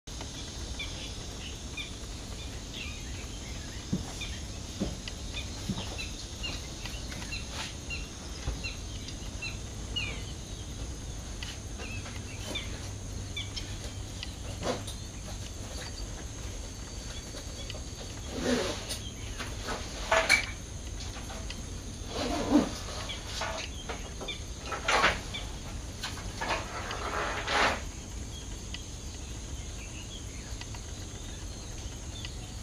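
Outdoor wetland ambience: many short, high chirps from small birds, thickest in the first third, over a steady low rumble. In the second half come about six louder short noises.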